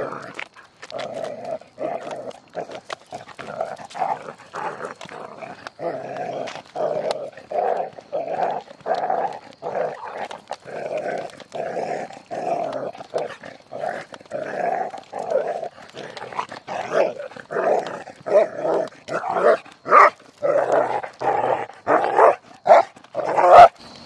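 A dog panting hard, with rhythmic breaths at about two a second that go on steadily, worn out after rough play. A sharp click comes near the end.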